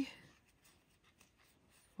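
Faint scratchy rubbing of yarn being drawn through stitches with a crochet hook as single crochet is worked, barely above room tone.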